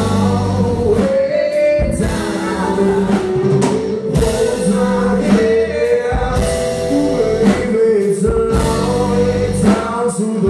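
Live rock band playing a song: electric guitars, bass, keyboard and drums, with long held sung notes over the top.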